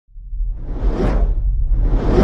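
Cinematic whoosh sound effect over a deep rumble, swelling to a peak about a second in, easing off, then starting to swell again near the end.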